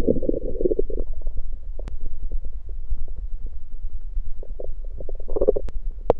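A man's stomach growling from hunger after fasting: a gurgling rumble that fades about a second in, then a quieter stretch over a steady low rumble, and a second gurgle near the end.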